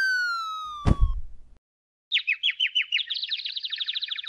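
Cartoon sound effects: a falling slide-whistle tone of a drop, ending in a thud about a second in. After a short pause comes the rapid twittering of cartoon 'dizzy' birds, which speeds up near the end.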